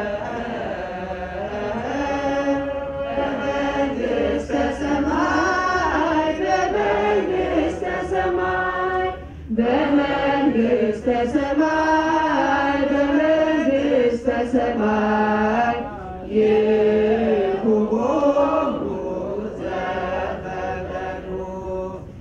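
Ethiopian Orthodox church hymn chanted with long held notes that slide and ornament between pitches, the line breaking off briefly about 9 and 16 seconds in.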